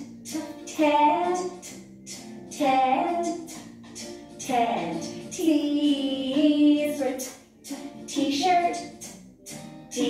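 Children's letter-T phonics song: voices singing short phrases over music with sharp percussive hits, pausing briefly between phrases.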